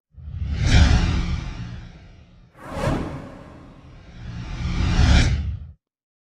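Sound-design whoosh effects with a deep rumble underneath. The first swells quickly and fades over about two seconds, a short sharp swish comes near the middle, and the last builds up slowly and cuts off suddenly just before the end.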